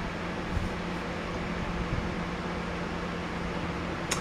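Steady mechanical hum and hiss with a constant low tone and no distinct events.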